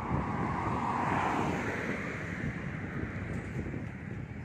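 A car driving past on the road, its tyre and engine noise swelling to a peak about a second in and then fading away, with wind rumbling on the microphone.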